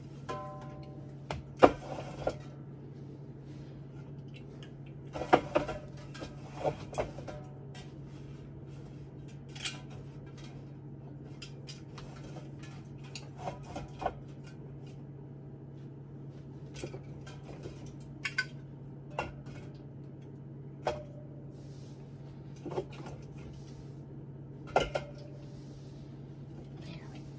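Aluminium soda cans being set down on a wooden pantry shelf and knocking against the other cans: irregular clinks and knocks, some ringing briefly, loudest about a second and a half in and again around five seconds, over a steady low hum.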